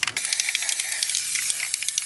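Aerosol can of gold spray paint hissing as it coats a plastic Christmas bauble, with a brief break just at the start.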